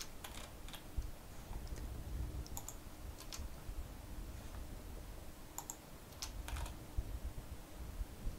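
Faint keystrokes on a computer keyboard, in three short bursts of clicks with pauses between, over a low room rumble.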